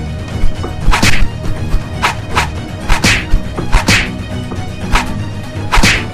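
Sharp whip-like swishes, one or two each second, over a steady music bed: a dubbed-on fight soundtrack.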